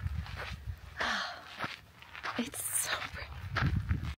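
A woman's soft laughs and breaths in short bursts as she walks, with footsteps on the trail over a steady low rumble of wind on the microphone.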